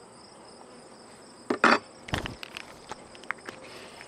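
Steady high insect chirring, typical of crickets, over the hum of honeybees on an open hive frame. Near the middle come two short, loud handling noises, followed by a few light clicks.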